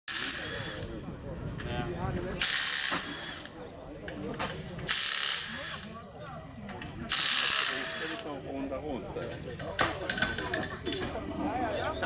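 Pneumatic impact wrench on a rally car's wheel nuts, running in four short rattling bursts about two and a half seconds apart, with lighter tool clicks near the end.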